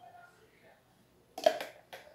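Rigid plastic lid and base of a Tupperware mini cheese keeper knocking together as they are fitted: a sharp plastic clack about one and a half seconds in and a smaller click near the end.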